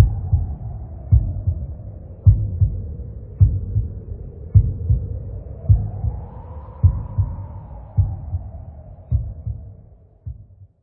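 Heartbeat sound effect in an intro soundtrack: a deep double thump repeating a little slower than once a second over a faint hum that swells in the middle, fading away near the end.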